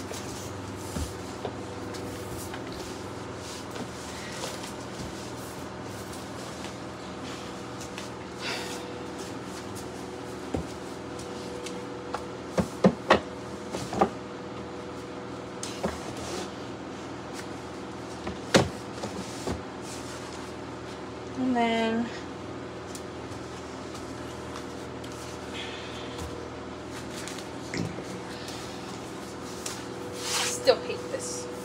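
Books being handled and set down on wooden bookshelves: scattered sharp knocks and thumps, loudest in a cluster a little before halfway, over a steady low hum in the room. About two-thirds through comes a short rising pitched sound.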